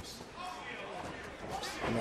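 Boxing punches landing with dull thuds, a quick run of them near the end, over arena crowd noise and ringside voices.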